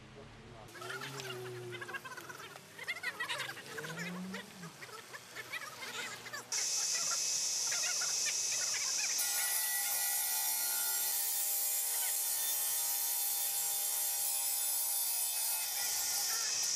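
Bench masonry saw cutting a concrete paving slab: a steady, high-pitched grinding that starts suddenly about six and a half seconds in. Before it, only faint voices.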